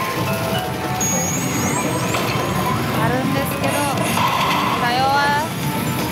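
Loud, continuous pachinko-parlour din, with a Pachislot Bakemonogatari machine playing its music, voice clips and electronic effects. A few quick high sweeping tones sound about a second in.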